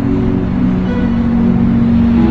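Worship band instrumental: keyboard and acoustic guitar holding sustained chords, moving to a new chord about a second in.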